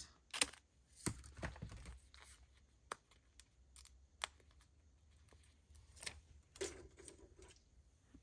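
Faint scissors snips cutting a plastic film-strip sticker, then scattered small clicks and crinkles as the sticker's plastic backing is handled and peeled off.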